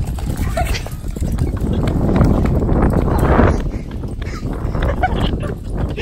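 Wheels of a pulled collapsible wagon rolling over asphalt: a continuous rumble with rapid rattling clicks, loudest around the middle.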